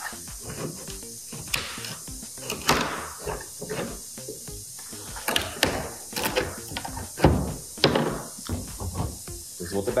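A hard resin mold shell being worked free and handled on a wooden workbench: scattered knocks and scrapes, with the loudest thump about seven seconds in.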